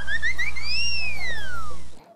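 Edited-in cartoon sound effect marking a flustered moment: a whistle-like tone climbs in quick little steps, then arches up and slides down in one long glide, over a steady low hum and hiss. It cuts off abruptly near the end.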